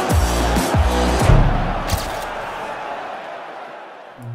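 Short music sting for a segment transition: a few deep bass hits in the first second and a half and a sharp hit near two seconds, then a hissing tail that fades out slowly.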